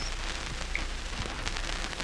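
Steady hiss with a low hum and faint scattered crackle: the background noise of an old radio broadcast recording between clips.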